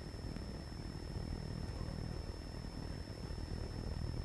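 Steady low room hum with a faint, constant high-pitched whine: the background noise of the hall's microphone and sound system, with no speech on the microphone.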